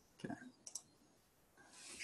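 A soft spoken "okay", then two faint clicks about half a second later as the presentation slide is advanced, and a quiet breath in near the end.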